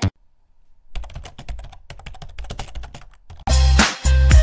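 A brief near-silent gap, then a rapid, irregular run of small clicks lasting about two seconds. Electronic music with a heavy bass beat comes in loudly about three and a half seconds in.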